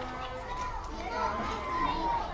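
Children playing: many children's voices calling and chattering over one another, as in a school playground.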